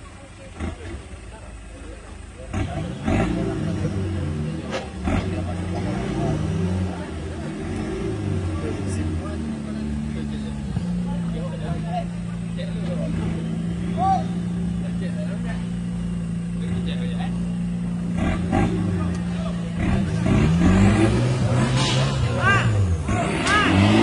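Off-road 4x4's engine revving hard in repeated surges as it climbs a steep mud bank. The engine is held at one steady pitch for several seconds midway, then revs up and down again near the end.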